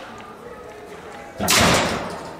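A corridor double door slamming shut with one loud bang about one and a half seconds in, which then fades.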